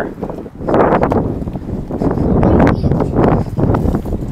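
Wind buffeting the microphone of a body-worn camera, a loud, rough rumble that sets in about half a second in, with a few light knocks as the camera moves.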